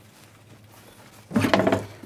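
A hinged stove cover is lifted open with a sudden clunk about one and a half seconds in, after a stretch of faint handling noise.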